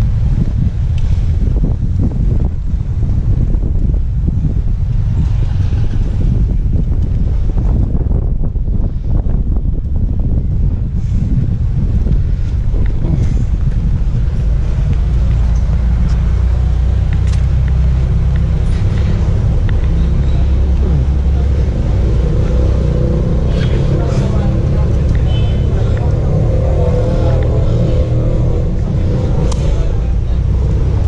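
Street ambience with a steady, heavy low rumble of traffic and wind on the microphone, and indistinct nearby voices in the second half.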